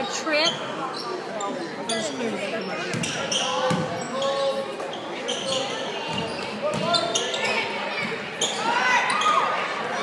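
Basketball game in a gym: sneakers squeaking on the hardwood, the ball bouncing, and spectators' voices, all echoing in the hall. The squeaks come thicker near the end.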